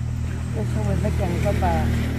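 A motor vehicle's engine hum passing close by, swelling toward the end and then fading, under a woman's voice.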